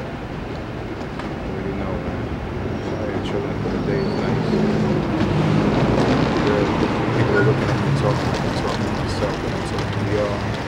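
A passing vehicle on the street: a low rumble that builds over several seconds to a peak about seven seconds in, then eases off.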